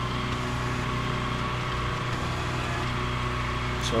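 Steady low drone of an engine running at a constant idle.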